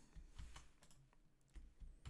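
Near silence with a few faint, scattered clicks from computer input: keys or mouse buttons tapped at the desk.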